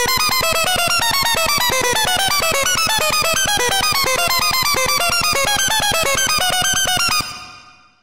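Synthesizer playing a fast sequence of short, evenly spaced sixteenth notes that jump about in pitch: a randomly generated chromatic MIDI riff. It stops about seven seconds in and fades away.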